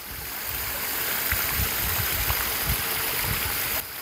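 Steady rushing of running water, growing slightly louder, with a few irregular low bumps; it drops off abruptly just before the end.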